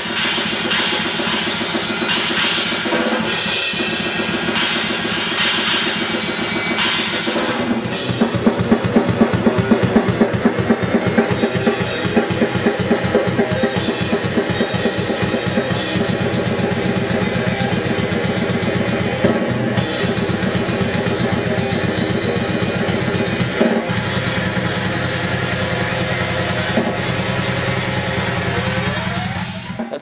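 A grindcore band playing a song as a studio recording take: a drum kit beaten fast with bass drum, snare and cymbals, under bass and guitar. The music stops abruptly at the very end as the take finishes.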